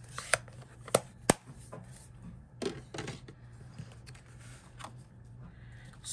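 A few sharp plastic clicks as an ink pad case is closed and set down on the work mat, then softer rustling of card stock being picked up and handled.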